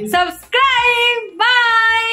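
A woman's high voice in two long, drawn-out sing-song notes, the second held for more than a second.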